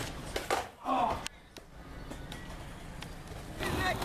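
Skateboard clacking on concrete as a trick lands, with sharp impacts about half a second in, followed by a short shout.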